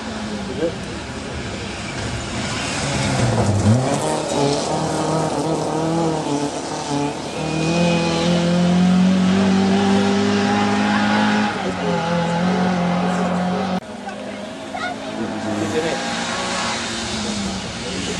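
Mk2 Ford Escort rally car's engine running hard on the stage, its pitch dipping and rising with the throttle and gear changes a few seconds in. It is loudest in the middle and drops off suddenly about three-quarters of the way through.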